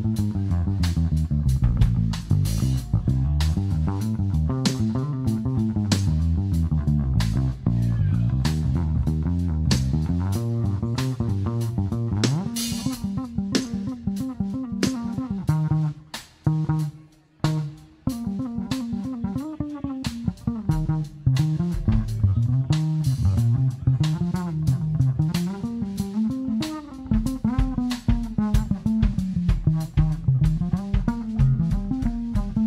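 Electric bass guitar solo: runs of plucked notes, climbing into a higher register about halfway through, with a short break a little past the middle before the lines pick up again.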